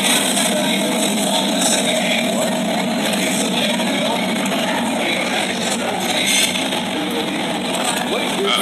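Busy restaurant din: a steady wash of background chatter and clatter, with a few faint clinks.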